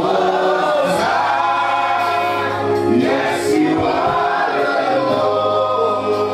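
A congregation singing in worship, many voices together over a steady low note.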